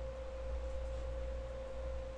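A faint, steady single-pitched whine over a low hum, unchanging and with nothing else on top: constant background tone in the recording.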